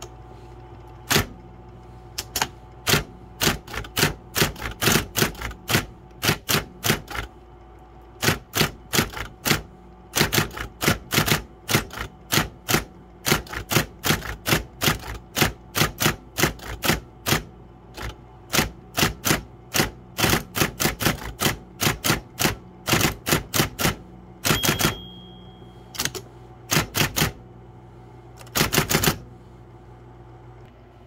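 Brother Correct-O-Ball XL-I electric ball typewriter being typed on: the single typeball element strikes the platen in quick irregular runs of keystrokes with short pauses between them. Its motor hums steadily underneath, and a brief high tone sounds about three-quarters of the way through.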